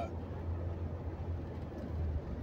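Steady low drone of a moving vehicle heard from inside its cabin: engine and road noise with an even rumble underneath.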